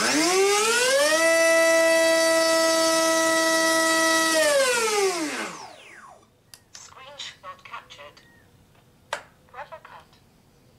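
Electric motor of a Hobbyzone AeroScout S2 RC plane turning a Master Airscrew 6x4.5 racing-series propeller on a static thrust run: a whine that rises as the throttle comes up, holds steady at full throttle near 20,000 rpm for about three seconds, then falls away as the motor winds down. A few faint clicks and taps follow.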